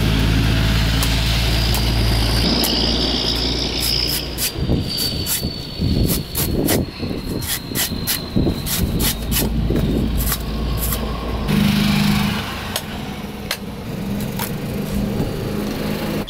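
A machete chopping into a green coconut on a wooden stump: a run of sharp, irregular chops. Under it runs the steady low hum of an engine.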